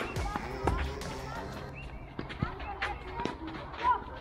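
Tennis ball knocks and bounces on a clay court between points, a handful of sharp, spaced hits with the loudest near the end, over faint voices.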